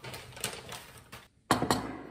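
Light clicks from dishes, then two loud sharp knocks of a ceramic plate and bowl being set down on a table.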